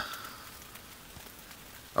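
Light rain falling: a faint, steady patter with a few scattered drips.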